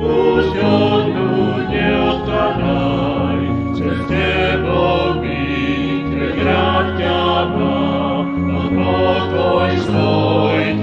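A church vocal group singing a Christian song, heard from a 1987 live recording transferred from cassette tape.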